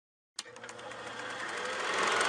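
Logo intro sound effect: a click about half a second in, then a rapid, rattling noise that swells steadily louder.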